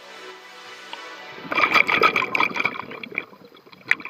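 A scuba diver's exhaled bubbles gurgling loudly past the underwater camera, starting about a second and a half in and fading over the next two seconds, with a sharp click near the end.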